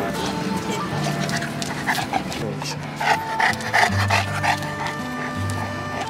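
A Saint Bernard panting in quick, short breaths, loudest about three to four seconds in, over instrumental background music with long held notes.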